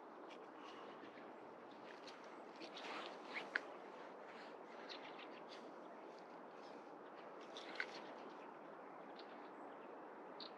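Faint scratching and rustling with scattered short clicks, two sharper ones about three and a half seconds in and near eight seconds: a Finnish Spitz sniffing and poking about in a snow-covered hole between rocks.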